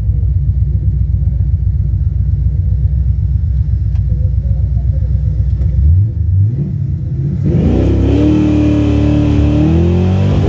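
Ford 351 V8 with Holley Sniper fuel injection in a 1966 Fairlane 500, idling with a deep uneven rumble at the drag-strip starting line. About six seconds in the revs climb as the car launches, dip briefly, then rise again and hold at a high, steady note under full-throttle acceleration.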